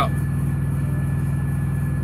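Semi truck's diesel engine idling steadily, heard inside the cab: an even low rumble with a thin steady tone above it.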